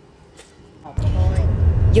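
Quiet room tone with a faint click. About a second in, a loud, steady low rumble cuts in suddenly, and a woman's voice starts over it.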